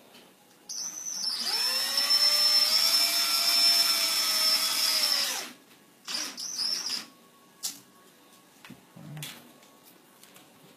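Cordless drill motor spinning up and running for about four seconds, twisting strands of copper wire together clockwise, then winding down. Two short bursts of the drill follow.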